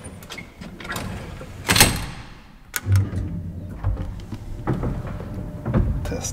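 Metal gate of a vintage elevator car being worked by hand: rattling, a loud clatter about two seconds in and a clunk about a second later, followed by a low rumble.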